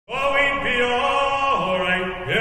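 Male voices singing a sea shanty, holding long notes and sliding slowly between them.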